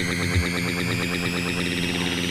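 Electronic dance music: a fast, pulsing synthesizer pattern with one bass-drum kick about half a second in. A high sweep rises steadily underneath it.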